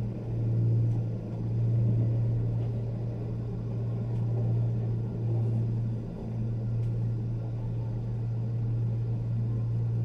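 Steady low rumbling hum inside a moving gondola cabin as it rides along its haul cable, wavering slightly in loudness.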